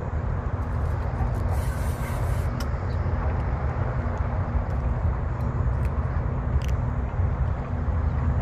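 Steady low outdoor rumble with a faint hum, a brief hiss about two seconds in, and a few light clicks; no screaming reel drag stands out.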